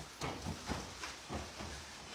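Quiet pause: faint steady hiss of room tone, with a few soft, brief low sounds.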